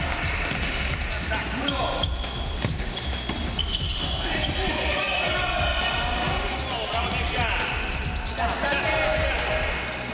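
A futsal ball being kicked and bouncing on a hard indoor court, with repeated short thuds.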